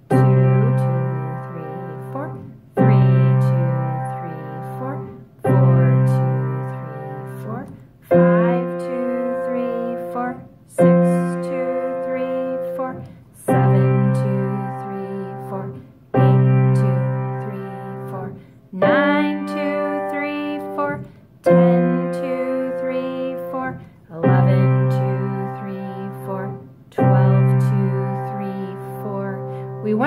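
Kawai piano playing a slow 12-bar blues in C, hands together: a chord struck once per bar, about every two and a half to three seconds, and left to ring and fade. The left hand plays an open fifth and the right hand follows it, moving from C to F, back to C, then up to G, down to F and home to C.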